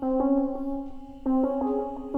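Software electric piano playing a chord pattern, sent through stereo delay and reverb with its lower notes taken out. Chords are struck at the start and again about a second and a quarter in, then once more soon after, each fading before the next.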